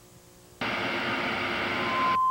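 Near silence for about half a second, then a sudden loud burst of TV static hiss, an even white-noise rush that cuts off abruptly at the end. It is a staged signal interruption, a mock 'please stand by' break.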